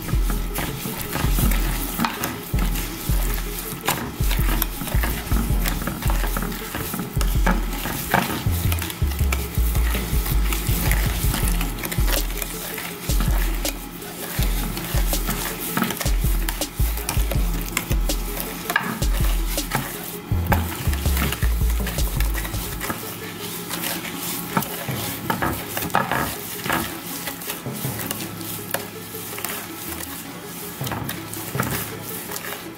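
Wooden spatula stirring and scraping a thick, gritty mix of brown sugar, melted butter and honey against the bottom of a glass baking dish, in continuous uneven strokes. Low background-music bass runs underneath and stops about three-quarters of the way through.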